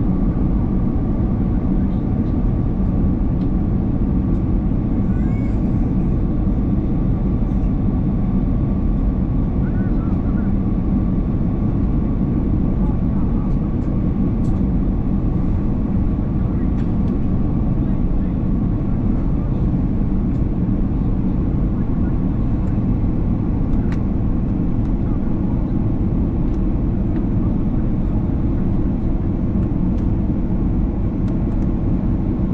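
Airbus A330-300 cabin noise during descent on approach: the steady low rumble of airflow and the turbofan engines heard from a window seat over the wing, with a faint steady whine above it.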